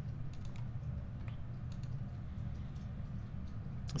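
A few faint computer mouse clicks, mostly in the first second and a half, over a steady low hum.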